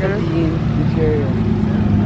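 BMW E30 coupe's engine running at a low, steady idle as the car rolls slowly past, with voices over it.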